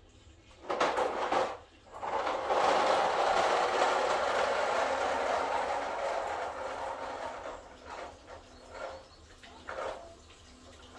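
Gasoline pouring from a plastic gas can into a Farmall A tractor's fuel tank: after a brief louder burst, a steady rush of liquid sets in about two seconds in and slowly tapers off, with a few short dribbles near the end.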